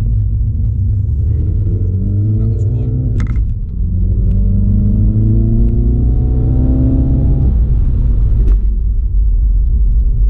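Inside the cabin, a MINI Cooper S F56's turbocharged 2.0-litre four-cylinder engine pulls hard under acceleration with a low road rumble. It climbs in pitch, shifts up once about three and a half seconds in, climbs again, then drops away near the end as the throttle is lifted. This is the car being brought up to speed for a brake bed-in stop.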